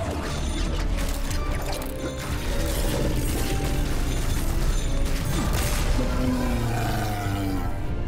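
Fight sound effects: a metal chain rattling and clinking, with whip lashes and many quick hits in a dense run, over a music score.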